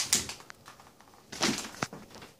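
Cardboard boxes and a book being handled and set in place on a countertop: brief scrapes and a couple of light knocks.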